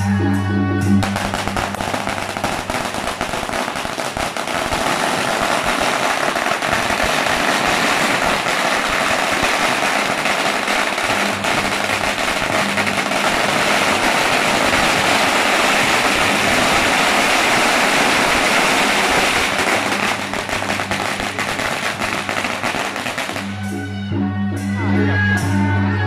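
A long string of firecrackers going off on the ground in a rapid, continuous crackle of bangs, starting about a second in and stopping shortly before the end. Music plays briefly at the start and comes back at the end.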